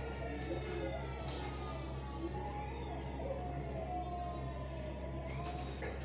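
Children's TV programme soundtrack playing from a television's speaker: music and sound effects with slowly falling, siren-like sliding tones over a steady low hum.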